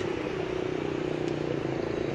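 A steady mechanical hum over outdoor street noise, like a running motor nearby.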